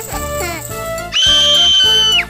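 Children's background music playing steadily, with a high, held whistle-like cartoon sound effect that rises in, holds for about a second in the second half, then drops away.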